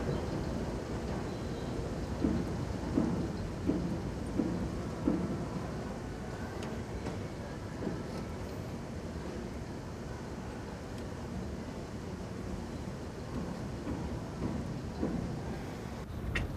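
Steady low rumble of outdoor street ambience, with a run of soft thuds a couple of seconds in, a little under a second apart, and a few more near the end.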